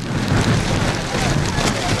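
A sudden torrential typhoon downpour, falling so hard it is likened to a waterfall: a dense, steady hiss of heavy rain hitting the ground.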